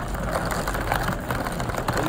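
Steady low rumble of wind buffeting the microphone outdoors in falling snow.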